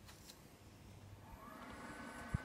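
Near silence: faint background hiss, with a faint steady hum coming in near the end.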